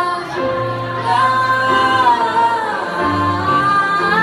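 Mixed vocal group singing in harmony through microphones, voices holding long notes that glide gently over a low sustained line.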